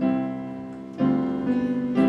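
Piano playing a hymn tune through once as an introduction for the congregation to learn: slow chords struck about once a second, each fading as it rings, in a simple stepwise melody.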